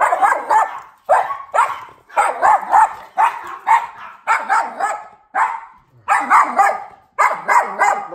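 Yorkshire terrier barking over and over, about two sharp barks a second, some coming in quick clusters. This is reactive barking at a visitor arriving; it is really loud and normally goes on for about 15 minutes.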